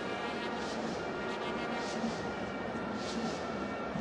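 Steady, fairly quiet stadium crowd ambience from a football match broadcast, an even wash of noise with faint sustained tones through it.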